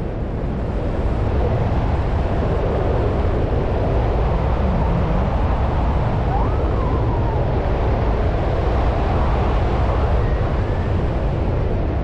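Wind rushing over the microphone of a wrist-mounted camera under an open parachute canopy: a steady, loud low rumble with hiss above it.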